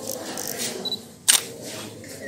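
A single sharp camera shutter click, a little over a second in, over a faint room background.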